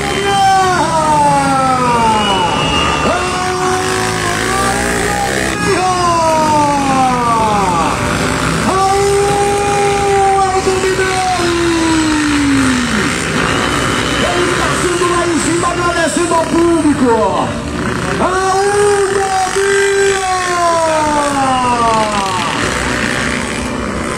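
Off-road motorcycle engines on a dirt race track, revving up and easing off as riders go round the circuit. The engine note climbs and then falls away in long sweeps, about six times.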